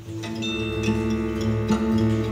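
Live music from a rock band with a small orchestra: sustained strings, bass and acoustic guitar swelling in, with a few high bell-like struck notes about half a second in.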